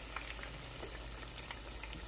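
Tuna kebabs deep-frying in hot oil in a nonstick pan: a quiet, steady sizzle with small crackles scattered through it.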